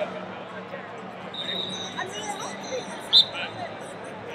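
Murmur of voices in a large wrestling arena, with a held high whistle tone from across the hall about one and a half seconds in. About three seconds in comes one short, loud, shrill blast, the referee's whistle starting the second period.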